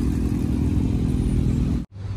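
Engine of a neo-classic boattail roadster running as the car pulls away at low speed, a steady low note; it cuts off suddenly near the end.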